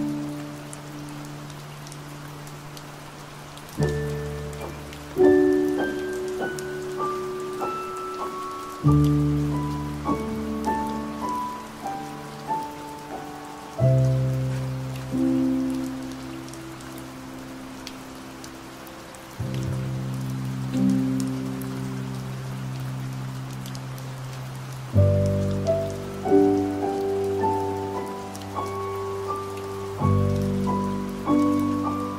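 Slow piano music: held chords that change about every five seconds, with short melody notes climbing above them, over the steady hiss of falling rain.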